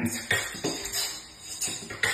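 Human beatboxing: a run of sharp mouth-percussion hits, clicks and hi-hat-like strokes, a few per second, easing off briefly just past the middle.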